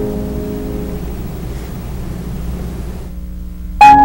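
Solo piano: a chord fades away over about three seconds, there is a brief hush, then a loud new chord is struck near the end.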